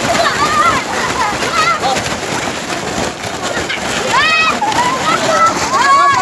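Children's voices shouting and calling out, with one high, drawn-out shout about four seconds in, over a steady background noise.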